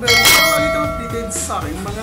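Notification-bell sound effect: a single bright ding that rings out and fades over about a second and a half.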